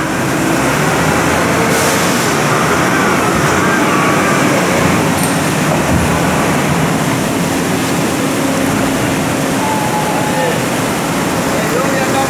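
A large forklift's engine running steadily as it drives, in a loud, even mechanical din with a few faint pitched whines over it.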